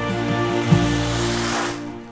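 Soft background music with held notes; a hiss swells up through the middle and the music fades out near the end.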